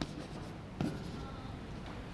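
Chalk writing on a blackboard, with a sharp tap of the chalk just under a second in.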